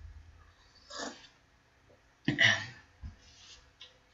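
Breathing and sipping sounds from a person drinking from a cup: a short one about a second in and a louder one a little past halfway, with a faint knock after it.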